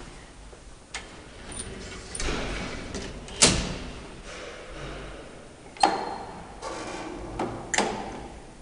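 Elevator doors and gate being worked: a sliding rush builds to a sharp bang about three and a half seconds in, then two more knocks follow near the end.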